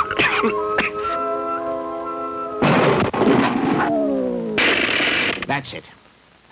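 Cartoon soundtrack: a man coughing hard in the first second, then a held music chord, then two crumbling crash effects each about a second long as stone front steps break apart, with a falling musical slide between them.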